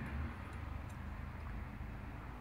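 Quiet low hum of room tone, with a faint light tick about a second in as the welded steel wire sample is fitted into the metal shear fixture.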